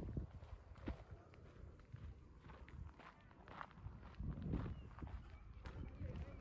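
Soft footsteps of a person walking at a steady pace, about one step a second, over a low rumble.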